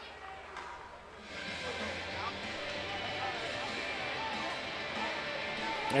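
Faint hockey-arena ambience during a stoppage: a murmur of voices with music playing over the arena's speakers, coming up about a second in.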